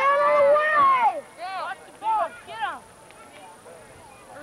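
Several high-pitched voices yelling at once for about a second, then three short single shouts.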